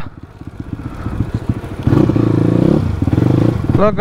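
Motorcycle engine running at low revs, with a louder stretch of revs lasting under a second about two seconds in, then settling back.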